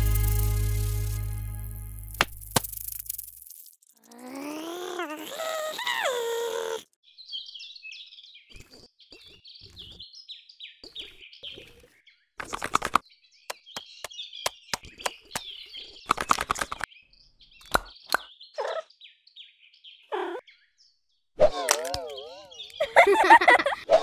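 Animated sound effects: a music chord dies away, then a pitched sound slides up and down. Light bird chirping follows, broken by a few short knocks and cracks as painted eggs crack open. Near the end comes a loud wobbling, giggle-like voice.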